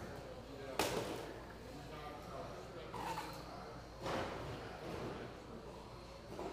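Indoor RC carpet-racing hall ambience: indistinct voices echoing in a large room, broken by two sharp knocks, the loudest about a second in and another about four seconds in.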